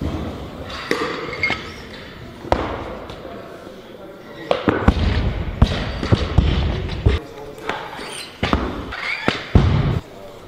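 Barbells with rubber bumper plates being dropped and set down on lifting platforms, giving several sharp thuds and clanks, some of them heavy, over a steady hubbub of voices in a large hall.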